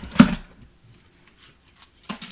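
The plastic platform and cutting plates of a hand-cranked die-cutting machine knock sharply once as the cutting sandwich comes through the rollers. A couple of faint ticks follow near the end as the plates are handled.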